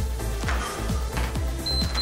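Electronic dance workout music with a steady thumping beat. Near the end, a single high steady beep from an interval timer sounds, marking the end of a 20-second tabata work interval.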